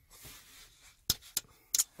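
A few sharp clicks from a round rocker switch for the cooling fan as a finger presses it where it sits wedged into the console. The clicks come about a second in, once more shortly after, and twice in quick succession near the end.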